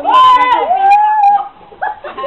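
A high-pitched, drawn-out wailing cry in two long held notes, the second a little lower than the first, followed by a short call near the end.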